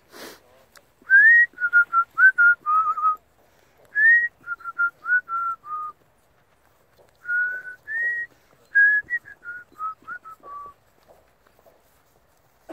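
A person whistling a tune in three short phrases. Each opens with a rising note and then steps down through several shorter, clear notes.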